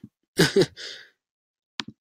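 A man's brief laugh trailing into a breathy sigh, then two short clicks near the end.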